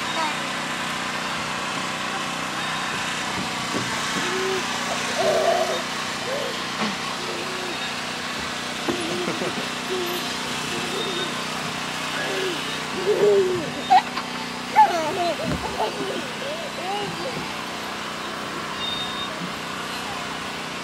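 Outdoor playground sound: short wordless vocal sounds from young children over a steady low mechanical hum, with a couple of sharp knocks about two-thirds of the way through.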